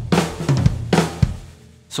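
Acoustic drum kit (Sakae Trilogy with a 14-inch brass snare) playing the end of a drum fill: quick snare and bass drum strokes with cymbal crashes near the start and again about a second in, the last crash ringing out and fading.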